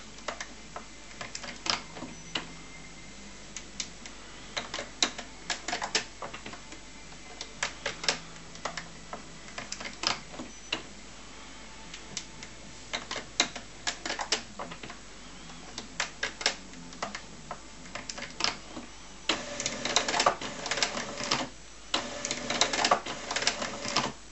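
HP Photosmart C4485 inkjet printer running its start-up routine: irregular clicks and clacks from its internal mechanism, with a few short spells of faint motor hum. The clatter is busiest over the last five seconds.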